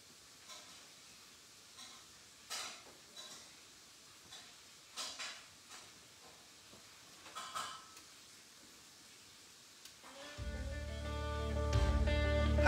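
Scattered light clicks and knocks of a vinyl record being handled on a turntable, then a click as the stylus goes down about ten seconds in, and music from the record starts through the speakers, with guitar.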